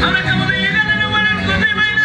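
Veracruz folk music with plucked strings and a high singing voice holding one long note.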